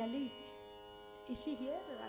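Steady drone from a sruti accompaniment, a stack of unchanging tones held throughout. A voice talks briefly at the start and again near the end.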